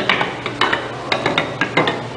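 Wooden plank blocks toppling one after another in a domino chain, a quick irregular run of about a dozen sharp wooden clacks as each falls onto the next.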